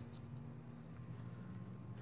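Quiet background with a faint, steady low hum and no distinct event.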